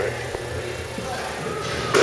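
Steady low hum of a large indoor hall with faint background voices, and a small knock about a third of a second in.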